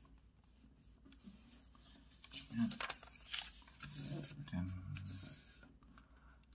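A sheet of paper being folded and creased by hand on a wooden table: rustling and rubbing strokes, louder from about halfway through.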